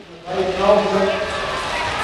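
Voices calling out over a steady hiss, each held on a fairly steady pitch and starting about a third of a second in.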